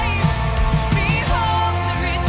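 Live contemporary worship band playing: a woman sings the lead melody over electric guitar, bass and drums.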